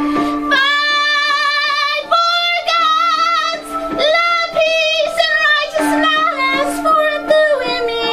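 A woman's voice singing a slow worship song with vibrato over a steady held keyboard note.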